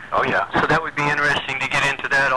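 A man speaking.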